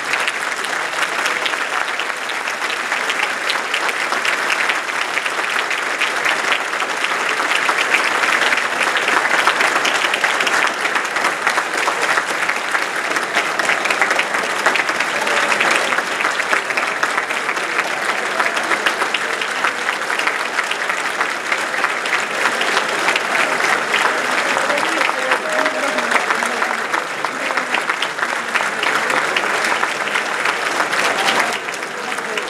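Large crowd applauding steadily, with voices mixed into the clapping.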